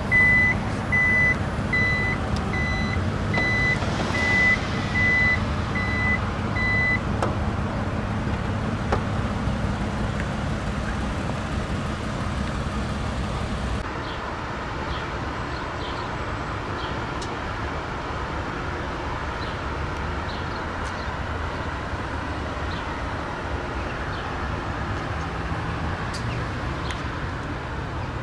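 Toyota Alphard power tailgate's warning buzzer beeping about twice a second while the door moves, stopping about seven seconds in with a click. After that there is only a steady background hum.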